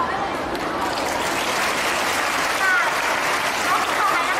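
Audience applauding, with voices talking over it.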